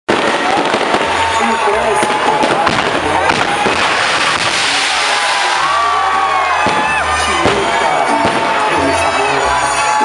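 A castillo firework tower burning: steady crackling and hissing, with whistling glides rising and falling throughout. Crowd voices and music from a band are heard underneath.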